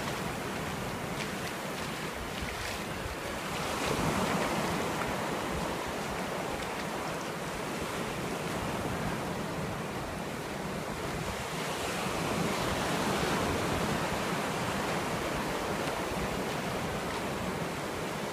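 Ocean surf breaking and washing up the beach in a steady rush, swelling louder about four seconds in and again around two-thirds of the way through.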